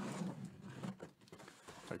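Cardboard and packing tape crackling and scraping as a tightly taped box is forced open by hand, with a low strained grunt of effort in the first second.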